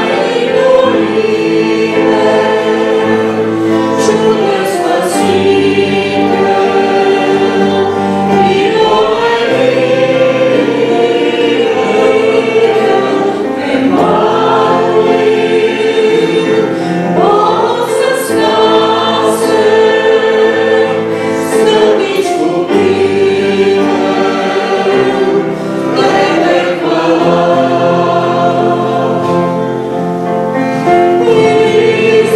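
Hymn sung by a group of male and female voices, with strummed acoustic guitar and digital piano accompaniment, in long held notes.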